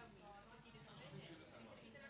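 Faint, indistinct voices of people chatting in a room.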